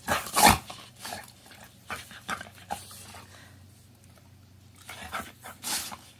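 A puppy reacting to a sour lemon: a loud, sudden huff of breath as it jerks its head away about half a second in, followed by short wet licking and lip-smacking clicks, and another breathy burst near the end.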